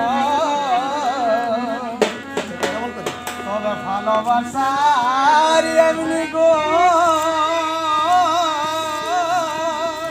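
Jhumur folk music: harmonium with a held, wavering melody, and a quick run of hand-drum strokes about two seconds in.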